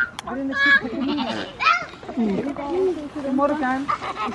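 Goats bleating among children's and adults' voices.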